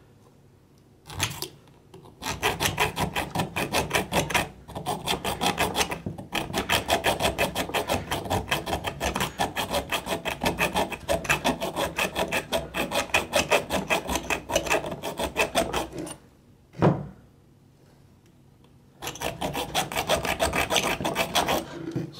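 Hacksaw blade, worked by hand, cutting a screwdriver slot into the soft-metal head of an idle air control valve mounting screw on a throttle body. It goes in quick, even back-and-forth strokes that stop twice for a moment.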